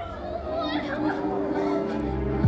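Several people in an audience talking at once, the words not made out, over quiet background music.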